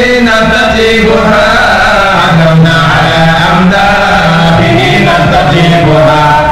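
Islamic devotional chanting, a slow melodic line of long held notes that step from pitch to pitch without a break.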